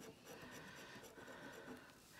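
Coin scraping the scratch-off coating on a paper scratch card: a faint, steady scratching.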